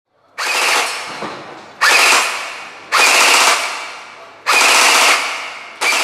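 Tokyo Marui M16 Vietnam electric airsoft gun firing five short full-auto bursts, each starting abruptly and fading away, the last one cut off suddenly.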